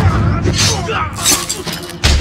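Sword-fight sound effects: two sharp blade hits or clashes less than a second apart, with fighters' grunts and shouts over a film score.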